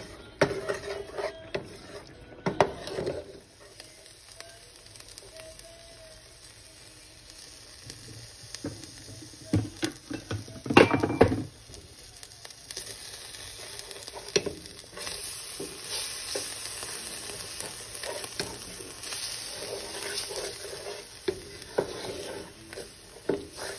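Mushrooms and onions sizzling in a frying pan while a wooden spatula stirs and scrapes them against the pan. There is a cluster of louder knocks and scrapes about ten to eleven seconds in. From about fifteen seconds on, the sizzle is steadier as flour is stirred in.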